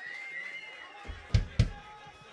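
Faint lingering tones on stage after a live rock song ends, then two heavy, sudden thumps about a quarter of a second apart.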